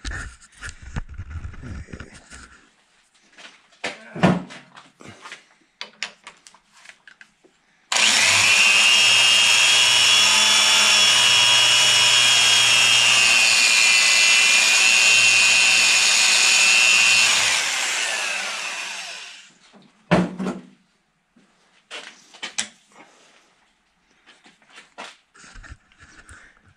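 Hand-held electric drill spinning a valve-seat grinding stone against a 45-degree diamond dressing tip, redressing the stone's face. It starts suddenly about a third of the way in, runs as a steady high whine for about ten seconds, then winds down. Clanks and knocks of handling the fixture come before and after.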